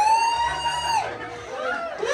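A high-pitched squeal or shout from one person, held for about a second at the start and then dropping away, over the excited chatter of a party crowd.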